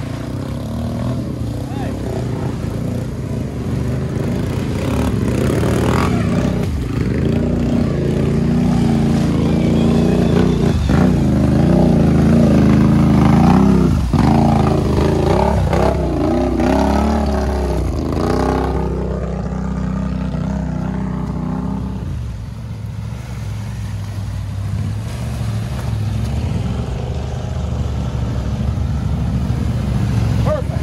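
ATV engines revving hard as the quads push through deep muddy water, the engine pitch rising and falling with the throttle. The revving is loudest about halfway through and eases off in the last third.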